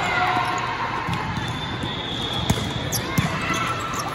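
Volleyball being struck during a rally: several sharp slaps of hands and arms on the ball, the loudest about two and a half seconds in, over steady crowd chatter and players' calls in a large hall.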